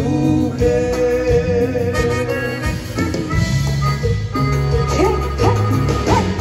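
Live Tejano band playing an instrumental stretch: accordion over bass guitar, drums and congas, with a few short swooping notes about five seconds in.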